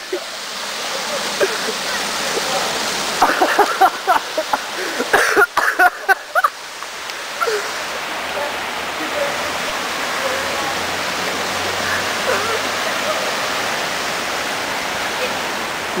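Steady rush of water spilling over a pond's stone weir edge, with voices calling out briefly twice in the first half.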